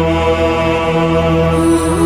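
Chant-style choral music: long held notes over a low sustained drone.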